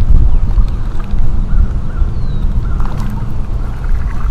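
Wind buffeting a body-mounted action-camera microphone: a loud, steady low rumble, with a few faint clicks.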